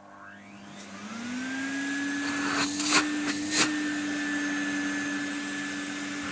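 Numatic Henry vacuum cleaner motor switching on and spinning up, its whine rising in pitch over the first second or so and then running steadily: it starts and runs normally on its replacement circuit board. About halfway through there are two short, loud bursts of rushing noise.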